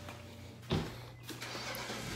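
A car door shutting with a single thud about three quarters of a second in, over a low steady hum.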